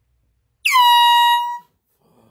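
Handheld aerosol air horn blasted once for about a second, a loud single-pitched honk whose pitch dips slightly at the onset and then holds steady before cutting off.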